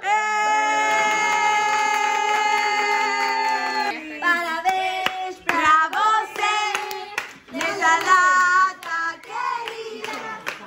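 Several voices hold one long, steady note for about four seconds. Then comes hand-clapping with short bursts of singing.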